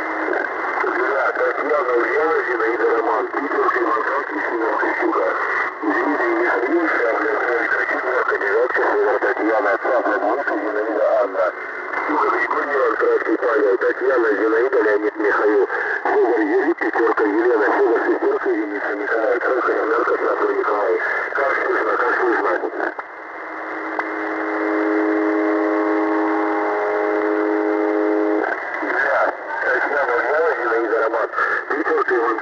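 Shortwave radio reception through a narrow, band-limited receiver: indistinct voice sounds in static, with no clear words. About two-thirds of the way through they give way to a steady buzzing tone for about five seconds, and then the voice sounds come back.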